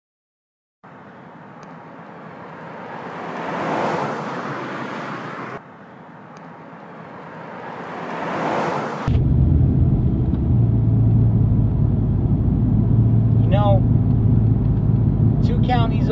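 A Ford pickup truck driving past on a road, its engine and tyre noise swelling as it approaches, heard twice, each pass cut off suddenly by an edit. From about nine seconds in, the steady low drone of the engine and road noise heard inside the pickup's cab while driving.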